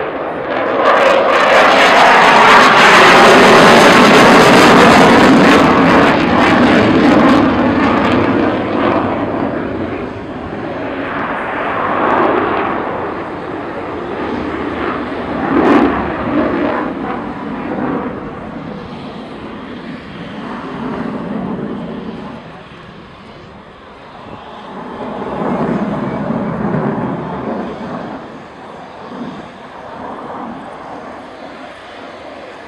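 Dassault Rafale B fighter's twin turbofan engines heard from the ground during a display. The jet noise swells to its loudest in the first few seconds, then fades and rises again in slow waves as the aircraft manoeuvres, with one brief sharp crack about 16 seconds in.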